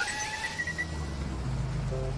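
Cartoon sound effects. A delivery robot's electronic warbling whine glides upward and fades out within the first second, then a low rumble of car traffic follows, with background music notes coming in near the end.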